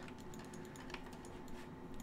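Faint computer keyboard and mouse clicks, a few scattered taps, over a low steady hum.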